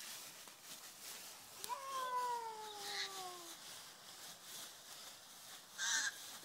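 Dry fallen leaves rustling and crunching underfoot. About two seconds in there is a single long call that rises briefly and then falls slowly for nearly two seconds, and a short loud rustle comes near the end.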